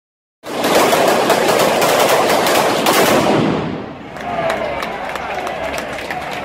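A string of firecrackers going off in a dense, rapid crackle for about three seconds, then dying down to scattered pops.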